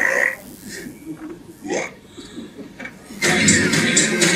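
Animated film trailer soundtrack played through hall speakers: a hush with a few short comic vocal noises, then loud music comes back in about three seconds in.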